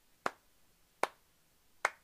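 Three sharp hand claps, evenly spaced just under a second apart.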